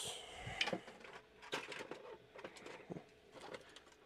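Small plastic LEGO pieces clicking and rattling against each other and the plastic sorting tray as a hand handles them, in scattered light clicks.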